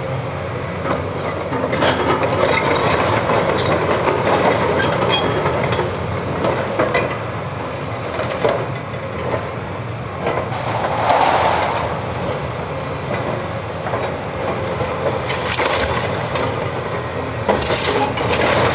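Cat 329E hydraulic excavator's diesel engine running under load while its demolition crusher jaws bite into and tear at a concrete-block and steel building, with scattered cracks, crunches and metal clanks of breaking masonry and debris.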